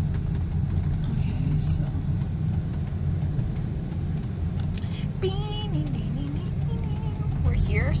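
Steady low rumble of a car driving, heard from inside the cabin. A voice speaks briefly about five seconds in and again near the end.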